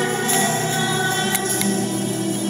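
Music with a choir singing.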